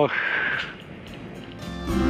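A spoken word ending in a breathy hiss, a short lull, then guitar music coming in loudly near the end.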